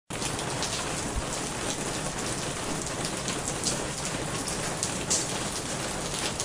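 Steady rain falling: an even hiss with scattered sharper drop taps.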